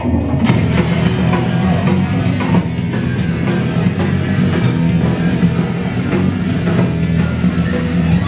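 Punk rock band playing live and loud: distorted electric guitar, bass and a driving drum kit.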